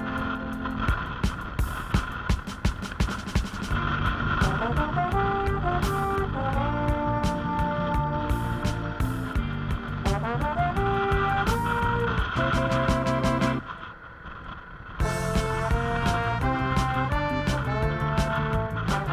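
Background music with a steady beat and a melody; it drops out briefly about three-quarters of the way through, then comes back.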